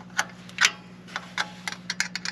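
Small open-end wrench clicking against a nut and bolt as a ground-wire terminal is tightened: a handful of irregular, sharp metallic clicks.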